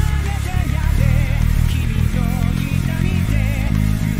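Five-string electric bass playing a steady line of repeated plucked notes along with the recorded song, the pitch shifting every bar or so, with a wavering melody above.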